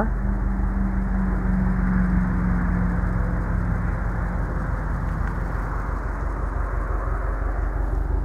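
A steady low hum, like a vehicle engine idling, under even outdoor background noise, with no distinct events; the hum weakens a little about halfway through.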